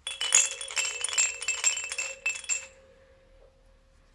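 Plush toy cat rattle shaken quickly by hand, giving a dense jingling rattle with bright ringing tones. The shaking stops about two and a half seconds in, and a faint ringing tone hangs on afterwards.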